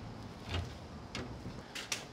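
Faint handling noises: a few soft knocks and light clicks as the smoked turkey breast is carried over to the wooden cutting board.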